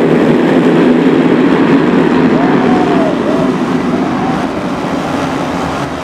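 A full field of motocross bikes at full throttle off the start gate, a dense mass of engine noise that slowly fades as the pack pulls away, with a few single engines rising and falling in pitch over it.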